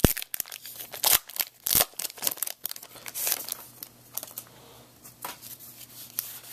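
Foil wrapper of a Pokémon booster pack being torn open by hand and crinkling, with several sharp rips in the first three seconds or so, then softer rustling as the cards come out.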